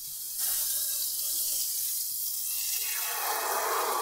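Butter sizzling in a smoking-hot cast iron skillet. About three seconds in, beaten eggs are poured into the pan and the sizzle swells into a fuller rushing hiss.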